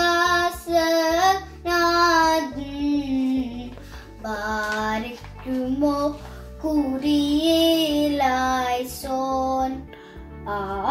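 A young girl singing a hymn from the Holy Qurbana solo, in long held notes that glide between pitches, phrase after phrase with short breaths between.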